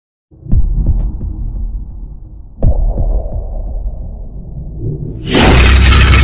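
Cinematic intro sound effects: two deep hits about two seconds apart, each fading into a low rumble, then a loud, harsh rush of noise that starts about five seconds in.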